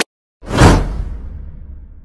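A whoosh transition sound effect with a low boom underneath, hitting about half a second in, its hiss sliding down in pitch and dying away over about a second and a half before it stops suddenly.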